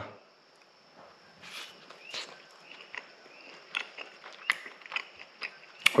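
A person chewing a soft fried malasada with closed mouth: faint, scattered wet mouth clicks and smacks about once a second.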